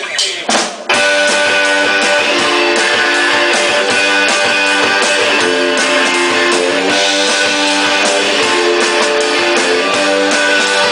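Live rock band of electric guitars, bass and drum kit: a few sharp hits in the first second, then the whole band comes in at once, playing loudly and steadily with strummed electric guitars over the drums.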